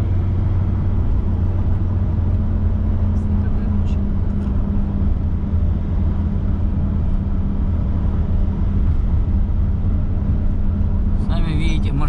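Steady low hum of a car's engine and tyre noise heard from inside the cabin while driving at an even speed, with a couple of faint clicks in the first half.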